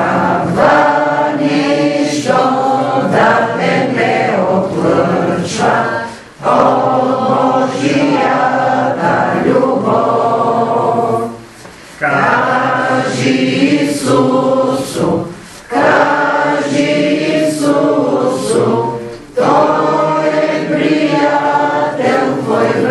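A group of voices singing a hymn together, line by line in phrases a few seconds long, with short breaks between the lines.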